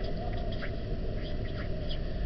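A pen scratching on paper in short, quick strokes, several a second, over a steady low rumble of room noise.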